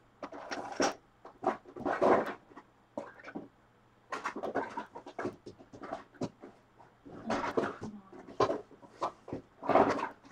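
Rummaging through a drawer of art supplies: irregular bursts of clattering, knocking and rustling as items are shifted about.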